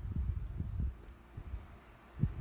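Soft, irregular low rumbling and bumps of handling noise as a plastic model deck section is turned over in the hand, busiest in the first second and fading after.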